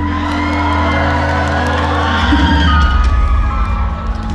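Live band of electric guitars, bass and drums playing, with the audience cheering and whooping over it. The bass holds a steady low note that changes about halfway through.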